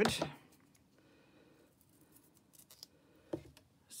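Scissors cutting a piece off thick double-sided foam tape: faint, short snips, with one sharper snip a little before the end.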